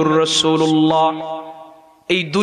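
A man's voice intoning a sermon in a sung, chant-like tune through a microphone, drawing out a long held note that dies away near the end.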